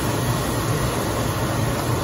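Steady kitchen background noise while a pot cooks on the stove: an even hiss with a low hum underneath and no distinct events.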